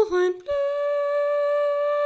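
A single unaccompanied voice singing a hymn melody. Two short notes come first, then one long note is held steady from about half a second in.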